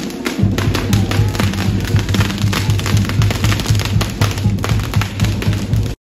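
Brass band music with a steady low beat from the tuba and bass drum, under a run of sharp pops and crackles from fireworks going off.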